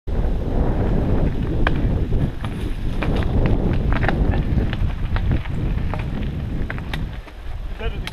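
Wind buffeting a helmet-mounted camera's microphone as a mountain bike rides a dirt trail, with frequent sharp clicks and rattles from the bike and helmet over the rough ground. A voice starts just before the end.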